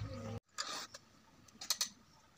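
Hand filing of a chainsaw chain with a round file: a short rasping scrape and, near the end, a few sharp metallic clicks. Before that, a steady low hum cuts off abruptly.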